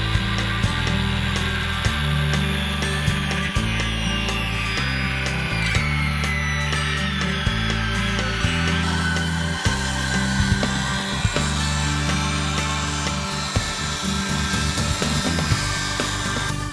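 Corded circular saw cutting through a thick rough-cut timber, its whine sinking in pitch partway through the cut, mixed under background music with a steady bass line.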